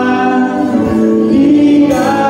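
Live worship band: several voices singing a Tagalog praise song together in held notes, over keyboard, electric guitars and drums.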